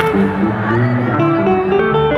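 A live band playing, with electric guitar lines to the fore over a steady backing of held notes.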